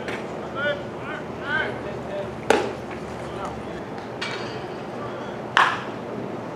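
Ballfield ambience: short called-out voices in the first couple of seconds, then two sharp cracks, the louder about two and a half seconds in and another just before the end.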